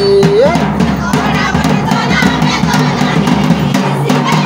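Jhumur folk music: a barrel drum beaten in a quick steady rhythm under a group of voices singing and calling. A held sung note swoops sharply upward about half a second in.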